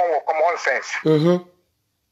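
Speech only: a man talking, heard through a phone's speaker, breaking off about a second and a half in.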